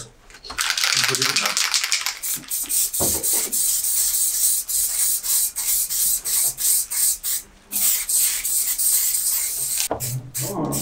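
Aerosol spray-paint cans hissing in rapid short bursts, with a pause of about half a second shortly before eight seconds.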